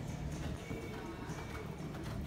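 A horse's hoofbeats on sand arena footing as it lands from a jump and canters on, over steady background music.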